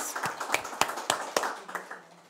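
A small group of people clapping, dying away toward the end.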